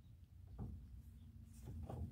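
Faint clicks from a Chevy Silverado's under-bed spare-tire hoist as it is cranked with the lowering rod and the spare wheel moves, over a low steady hum.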